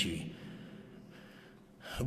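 A man's voice trails off at the end of a word, followed by faint room tone. Just before he speaks again, near the end, there is a short, sharp intake of breath close to the microphone.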